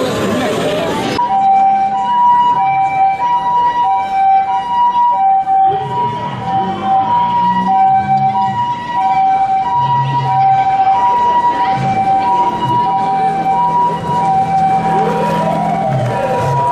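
Two-tone hi-lo siren of an Osaka City Fire Bureau ambulance, the Japanese "pi-po" call alternating evenly between two pitches about every two-thirds of a second. It starts about a second in.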